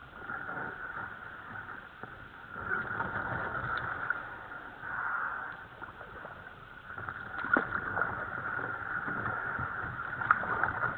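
Tall reeds scraping and swishing along a plastic kayak's hull as it is paddled through a dense reed bed, in uneven swells, with a few sharp knocks about three quarters of the way through.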